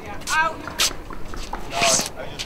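Short bits of players' voices on an outdoor pickleball court, with a couple of sharp clicks and shoe scuffs as they move about between points.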